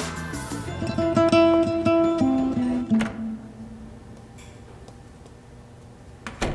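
Background score of plucked guitar that ends about three seconds in with a few falling notes and a sharp click, leaving quiet room tone.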